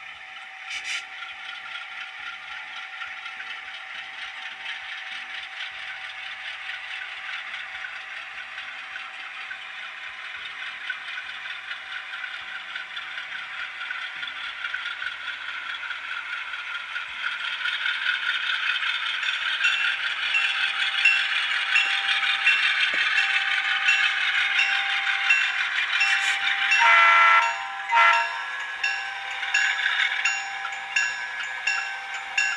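Sound-decoder diesel engine sound from HO-scale model locomotives, played through their small onboard speakers as they run on the track. The engine sound grows louder about halfway through, and a horn blows near the end.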